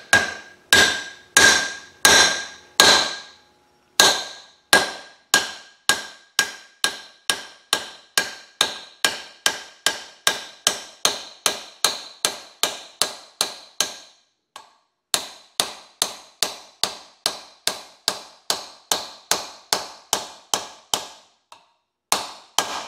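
Hammer tapping on a homemade half-inch-pipe driver, pressing the pickup tube into the body of a Melling high-volume oil pump. It makes a long series of sharp metallic taps, each with a short ring. They come slowly at first, then about two to three a second, with a brief pause about two-thirds of the way through.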